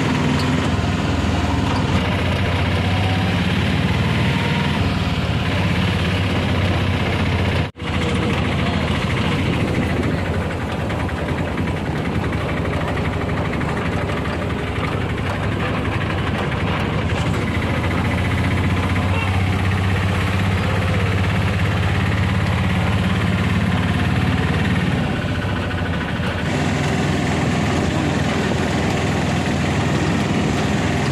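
Auto-rickshaw's small engine running steadily as it drives, heard from inside the open cabin. The sound cuts out for an instant about eight seconds in.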